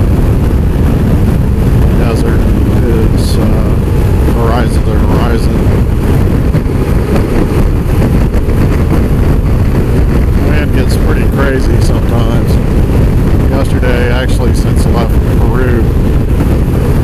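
Steady wind rush buffeting the microphone over the engine and road noise of a motorcycle cruising at highway speed.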